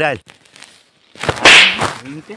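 A loud swishing whoosh, a comedy sound effect, swelling and fading over under a second, starting a little after a second in.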